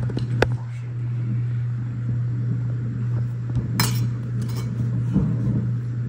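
A metal round cutter clinking against a plate as bread is pressed into circles: a sharp clink about half a second in and another near four seconds in, with a few lighter taps. A steady low hum runs underneath.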